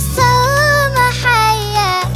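A child's solo singing voice holding melodic notes in Arabic over a music backing with a steady low bass. The sung line steps down in pitch toward the end.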